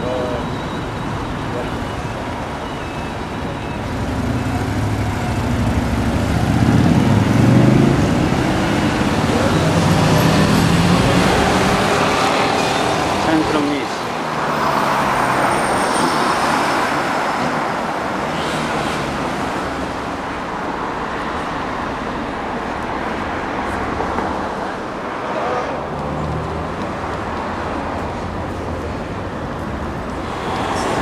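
Road traffic: cars driving along a city street, engines and tyres, louder for several seconds in the first half as vehicles pass close by.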